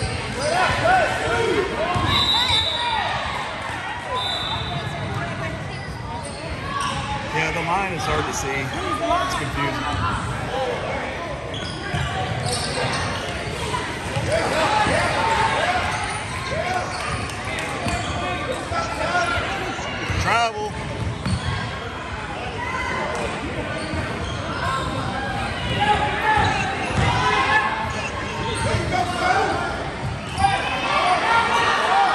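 Basketball game in a large gym: a ball being dribbled on the hardwood court, with players and spectators calling out throughout.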